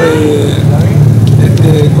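A motor vehicle engine idling with a steady low hum. A man's voice trails off over it in the first half second.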